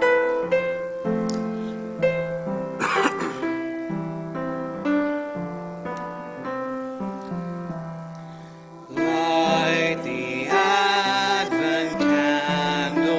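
Piano playing the introduction to the Advent song in a slow series of notes and chords, with a short noise about three seconds in. About nine seconds in, singing starts over the piano.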